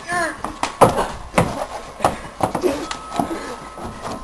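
Towels being whipped: a handful of sharp snaps spread through a few seconds, after a brief voice at the start.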